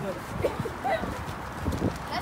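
Footsteps on a concrete sidewalk as a small group walks, with faint voices in the background.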